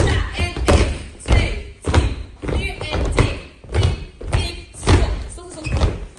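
A group of children's feet thudding on a studio dance floor in time, about three strokes every two seconds, as they do a running step together.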